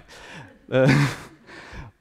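A man's breathy, sighing "uh" of hesitation about a second in, with faint breathing just before and after it.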